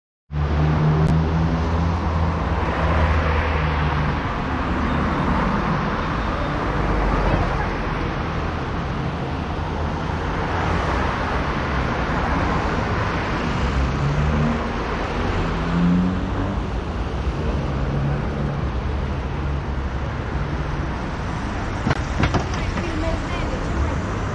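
City street traffic: cars and trucks passing on a multi-lane road, tyre and engine noise swelling as each one goes by, over a steady low engine hum.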